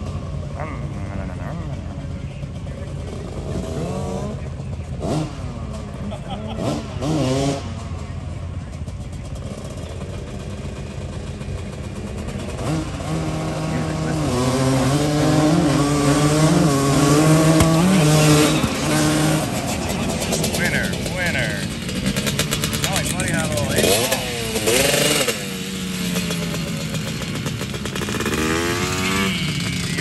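Vehicle engines running at a dirt racetrack, with a steady low hum throughout; about midway one engine grows louder and revs in steps for several seconds before easing off. Voices are heard over the engines at times.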